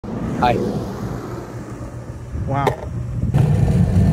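Low rumble of skateboard wheels rolling on concrete, jumping louder about three and a half seconds in, with two short exclamations from a man over it.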